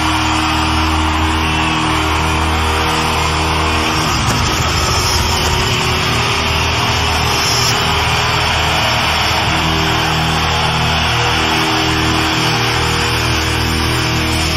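Live heavy metal band played backwards: distorted electric guitars and bass in long held chords over drums, loud and steady. The chords change about four seconds in and again near ten seconds.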